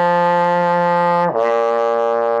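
Trombone in first position playing a lip slur: a sustained F slurs smoothly down to the low B flat about a second and a half in, with no new tongued attack. The drop is made quickly by changing the inside of the mouth from an 'ah' to an 'oh' shape.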